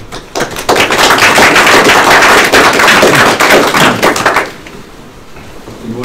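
Audience applauding: a burst of many hands clapping for about four seconds, then dying away.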